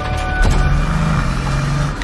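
A car engine running loud, coming in suddenly about half a second in and holding a steady low drone.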